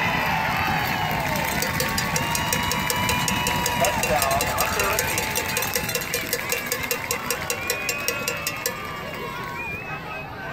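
Football crowd cheering and yelling after a big play, with a cowbell rung in a fast, steady rhythm for several seconds and stopping near the end.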